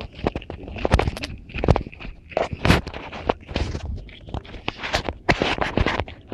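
Footsteps hurrying down steep trail steps: an irregular run of scuffs and thuds, two or three a second, mixed with rubbing from the handheld camera. The sound is muffled by a finger covering the microphone.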